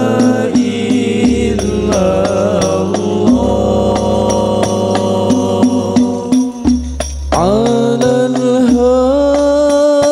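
Al Banjari sholawat: a male lead voice sings long, ornamented held notes of an Arabic devotional song through microphones, over scattered strokes of rebana frame drums and deep low notes. About seven seconds in, the voice slides steeply up into a new phrase.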